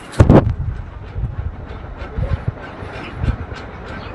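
Low steady rumble with irregular soft knocks from an aluminium pot of rasam heating on the stove, opened by a loud bump about a quarter-second in.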